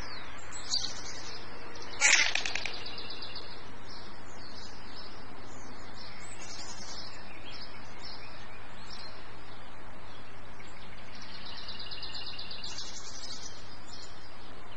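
Small songbirds chirping and singing repeatedly, with one louder, sharper call about two seconds in and a longer trill near the end, over a steady background hiss and a low hum.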